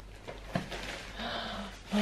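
Quiet handling of a computer monitor on its stand, with one light knock about half a second in. A short, faint murmur of a woman's voice follows.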